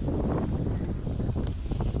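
Wind buffeting the camera's microphone: a steady, low rumble.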